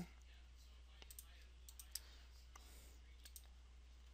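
Near silence broken by several faint, sharp computer mouse clicks at irregular intervals, as keys of an on-screen graphing calculator are clicked, over a faint steady low hum.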